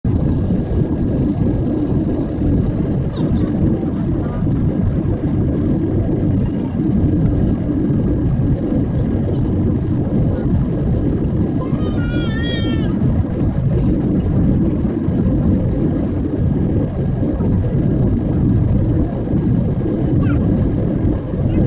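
Steady low rumble of a jet airliner's engines and airflow heard inside the passenger cabin during descent. About twelve seconds in, a brief high-pitched voice sounds over it.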